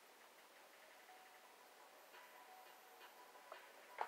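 Near silence: faint room tone with a few faint ticks and some faint steady tones.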